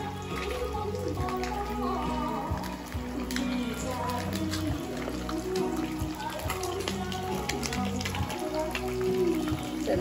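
Background music with a melody of held, gliding notes, over the fine crackling of a golden pompano frying in hot oil in a pan.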